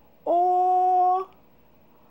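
A single voice holding one vowel at a steady, level pitch for about a second. It is the high, level first tone of Mandarin, sounded on a simple final for pronunciation practice.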